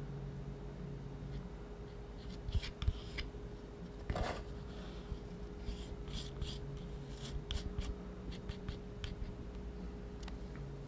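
Metal palette knife pushing and spreading thick paint across paper: a run of short, irregular scrapes and soft wet squishes, with a clearer stroke about four seconds in.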